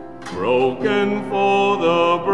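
A male cantor singing a hymn with piano accompaniment; after a brief lull, the voice comes in about a third of a second in.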